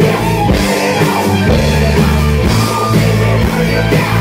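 A live rock band playing loudly through the PA: electric bass, electric guitar and a drum kit keeping a steady beat.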